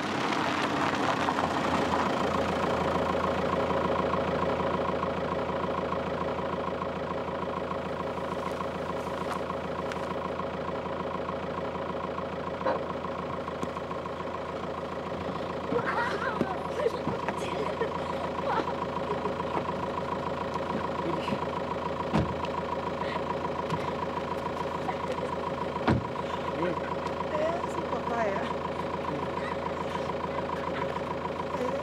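A Volkswagen Golf hatchback's engine idling steadily, louder in the first few seconds, with a few sharp knocks over it.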